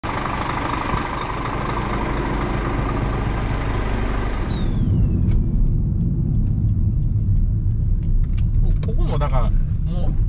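For the first half, a steady drone with an even hum in it, ending in a sweep that falls in pitch. Then the low, steady rumble of road noise inside a moving Toyota Prius, with brief voices near the end.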